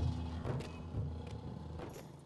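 Car engine's low rumble heard inside the cabin, with a few faint clicks.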